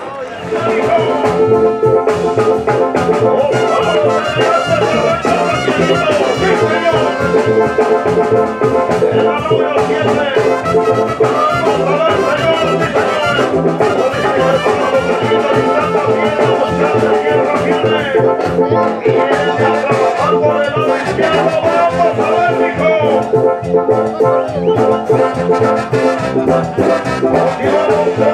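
Brass band music, trumpets and trombones playing over a steady beat.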